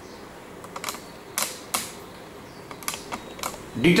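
About half a dozen light, sharp clicks and taps, scattered irregularly over a faint steady hiss.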